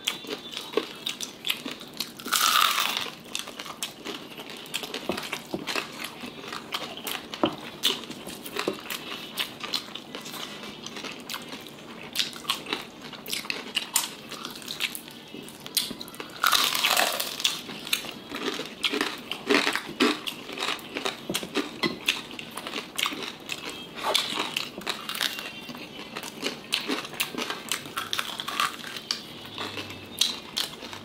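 Crispy fried pork knuckle (chicharon) being bitten and chewed, a steady run of small crunches and crackles of the crisp skin. Two longer, louder sounds stand out, about two and a half seconds in and again about seventeen seconds in.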